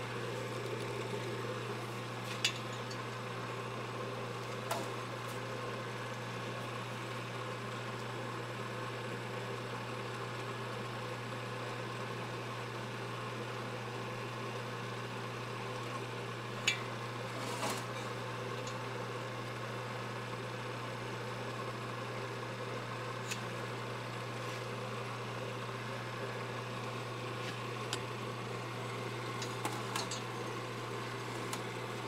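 A steady low machine hum from a running shop motor, with a few short metal clicks and taps as a dial bore gauge is worked into the two-stroke motorcycle cylinder to measure the freshly honed bore. The sharpest click comes a little past halfway.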